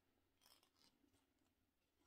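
Near silence, with a few faint crisp ticks of twisted cotton thread plucking eyebrow hairs during threading, mostly in the first half.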